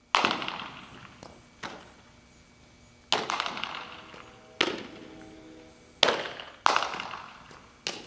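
Softballs being struck and fielded in ground-ball practice: a series of sharp cracks about every second and a half, each ringing on in the echo of an indoor training hall.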